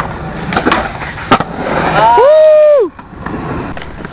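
Skateboard wheels rolling on concrete, with sharp board clacks at about half a second and a little over a second in. Then a long, high shout rises, holds and falls off, the loudest sound, cutting off just before three seconds.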